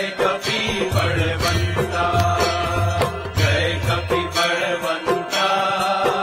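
Temple aarti music: bells and drums striking a steady, even beat under a chanted devotional melody, with a low drone that drops out and returns.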